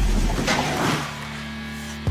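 Background music with a deep bass hit at the start, then a held low note with a chord over it.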